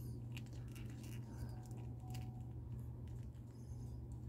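Faint small clicks and rubbing of hard plastic as a toy revolver is pushed into an action figure's hand, over a steady low hum.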